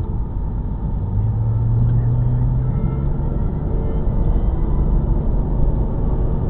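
Car engine and tyre noise heard from inside the cabin: a steady low rumble, with the engine note coming up and rising slightly in pitch about a second in as the car pulls away out of a curve.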